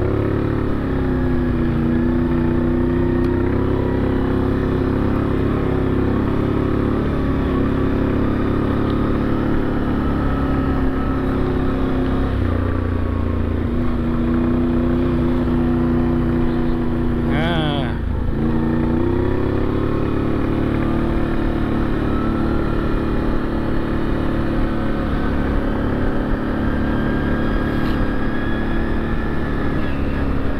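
ATV engine running steadily under way, its note rising and falling with speed. About eighteen seconds in, the pitch drops sharply and then climbs back.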